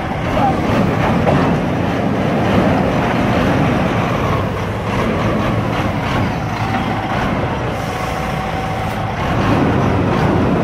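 Semi truck's diesel engine running steadily.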